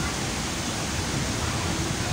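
Steady rushing of falling water from a man-made water feature.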